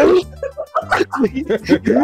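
Several people laughing hard over a voice-chat call, a loud burst of laughter at the start and more laughing near the end.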